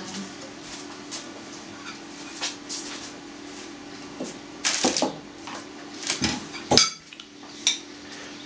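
A spoon clinking in a bowl of minced-meat filling and the bowl knocking down onto the table: a few sharp knocks and clinks in the second half, the loudest near the end.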